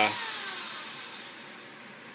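The tail of a drawn-out spoken 'uh', then a faint steady hiss that slowly fades. A thin, high whistle glides downward through the first second and a half.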